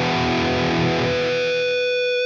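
Distorted electric guitar chord, played through a Line 6 Helix, held and ringing. About halfway through, a synthetic feedback tone from the AcouFiend plugin, set to its second-order harmonic, slowly swells in as a steady high note over the chord.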